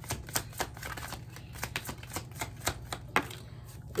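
Deck of tarot cards being shuffled by hand, the cards slapping together in a steady rhythm of about four a second that stops shortly before the end.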